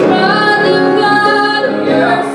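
A woman singing a church hymn with piano accompaniment, holding long notes.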